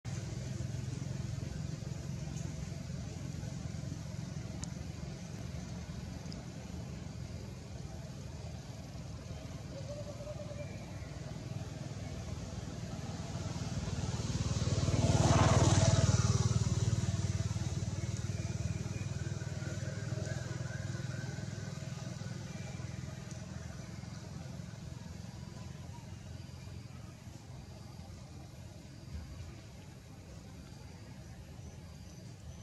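A motor vehicle passes close by: its engine and road noise swell to a peak about halfway through and fade away over several seconds, over a steady low hum.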